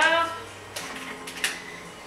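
A voice slides upward briefly at the start, then a few light clicks and knocks of a plastic blender jar being lifted off its base, the sharpest about a second and a half in.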